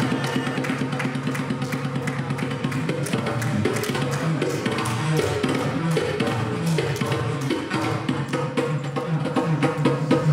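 Live band playing an instrumental passage of Afro-Dominican folk-rooted music: electric guitar and electric bass over hand drums keeping a dense, steady rhythm.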